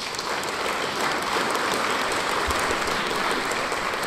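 Concert audience applauding steadily, a dense even patter of many hands clapping.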